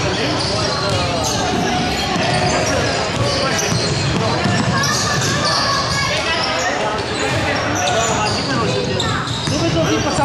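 Basketball game in an echoing sports hall: players' voices calling out over one another while the ball bounces on the wooden court.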